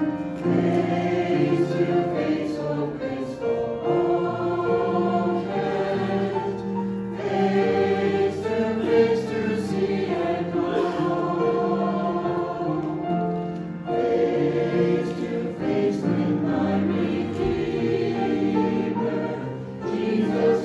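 Mixed-voice church choir singing a hymn in sustained harmony.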